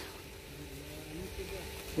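A quiet gap between words: a low rumble with a faint steady hum, and faint distant voices.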